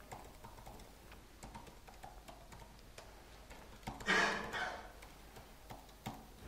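Faint, irregular keyboard clicks as a username and password are typed into a login form. About four seconds in there is a louder, brief noise lasting about a second.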